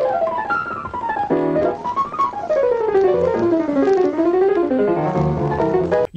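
Solo jazz piano from an old film recording, playing fast, flowing runs: one climbs to a peak about two seconds in and cascades back down, and another rises again near the end, over low chords in the left hand.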